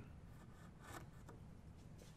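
Faint scraping of a wood chisel pushed by hand, paring the bottom of a butt-hinge recess cut into timber: a few short, light strokes.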